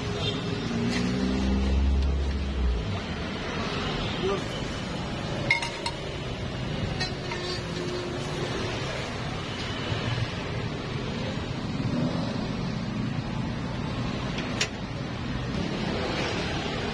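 Metal cooking utensils clinking now and then on a steel crepe griddle, with two sharp clinks standing out, over a steady background of people talking. A brief low rumble sounds near the start.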